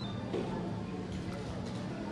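Indistinct background voices over steady room noise, with no clear words.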